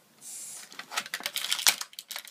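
Plastic packaging of a Moshlings toy five-pack being handled and pried open: a soft rustle, then a quick run of sharp clicks and crinkles from about a second in.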